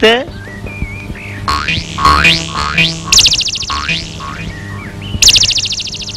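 Film background score of whistle-like rising glides and two bursts of rapid, buzzing high trill, like comic sound effects, over a steady low hum.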